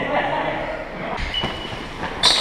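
Players' voices and calls echoing in a large gym, with a brief thin high squeak about one and a half seconds in.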